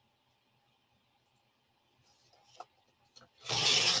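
Very quiet at first, with a couple of small clicks, then a short rasping slide of about half a second near the end as the paper trimmer's cutting carriage and cardstock are handled.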